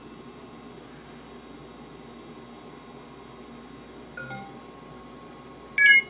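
Steady faint hiss of room tone, broken by two short electronic beep tones: a soft one about four seconds in and a louder, higher one just before the end.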